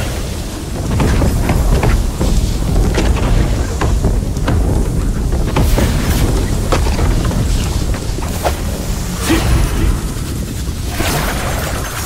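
Animated battle sound effects: a loud, continuous deep rumble with sharp thunder-like cracks every second or so, the sound of a lightning-charged sword attack, mixed with background music.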